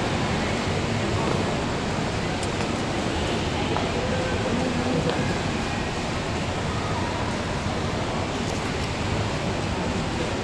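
Steady, noisy hubbub of an indoor swimming arena during a race, with faint voices in it now and then.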